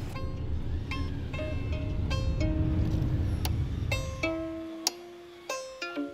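Violin strings plucked one at a time: a slow run of single ringing notes, about two a second, over a low rumble that dies away a little after the middle.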